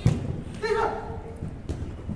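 A futsal ball kicked hard in a shot: one sharp thud of boot on ball at the start, followed by a short shout from a player and a fainter knock of the ball near the end.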